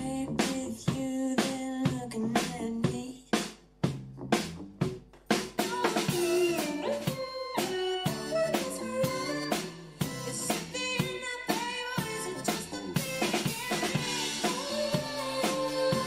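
Live band music: a drum kit keeps a steady kick-and-snare beat under a bass line. The lower parts drop out briefly about four seconds in, then a woman sings over the full band.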